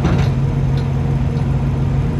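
Steady low drone of diesel engines idling, a constant hum with a fainter steady whine above it, as from parked trucks and trailer refrigeration units running.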